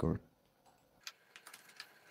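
Computer keyboard typing: a run of light, irregular keystrokes starting about a second in.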